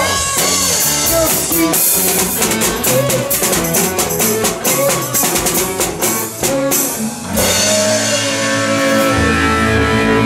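Live rock band playing an instrumental passage on electric guitar, bass and drum kit. The drums beat steadily for about seven seconds, then stop, leaving held guitar and bass chords ringing.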